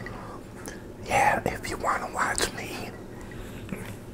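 A man whispering a few words, starting about a second in and lasting about a second and a half.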